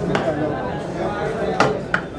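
Steel serving plates and a ladle knocking against a large metal cooking pot as rice is dished out: three sharp clanks, the loudest about one and a half seconds in, over steady voices.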